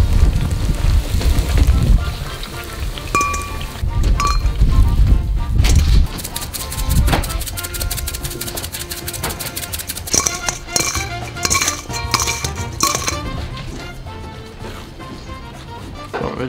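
Background music with a beat over kitchen sounds: metal kitchenware clinking a few times, sharpest about two thirds of the way through.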